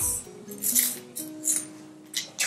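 Soft background music with a few held notes, over two or three short scrapes and clinks of coins being slid and picked up off a sheet of paper.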